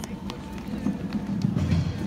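Outdoor town-square ambience: footsteps on paving stones, a few times a second, over a hum of people's voices and faint background music.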